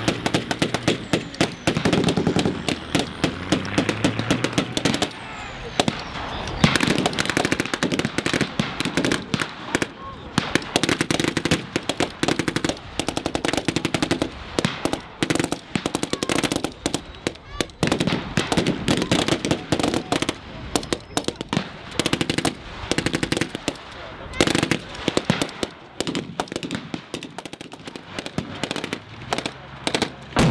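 Blank-firing rifles and automatic weapons in a staged firefight: rapid, overlapping shots and bursts with hardly a gap between them.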